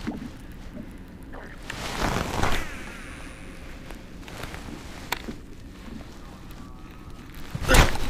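Rustling and bumping from clothing and handling close to the microphone, with a louder swell of rustle about two seconds in, a few light clicks, and a sharp knock just before the end.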